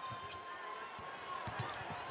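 Basketball being dribbled on a hardwood arena court, a few irregular bounces, under steady crowd noise.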